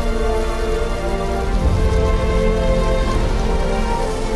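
Music of long held notes layered over the dense crackle of a blazing building fire.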